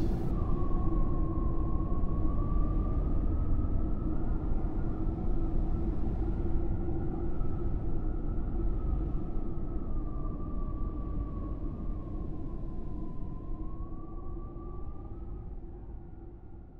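A steady low rumbling drone with a thin whining tone that drifts slowly up and down, fading out gradually over the last few seconds.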